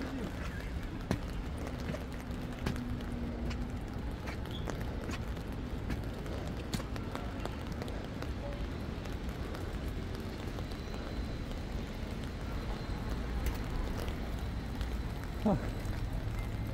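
Footsteps climbing a flight of stairs and then walking on a paved path, faint irregular steps over a steady low outdoor rumble.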